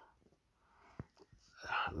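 A man's voice trails off, then a short pause holds a soft breath and a single sharp click about a second in, before his speech starts again near the end.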